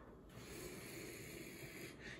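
A man's faint breath through the nose in a pause between sentences, over quiet room tone.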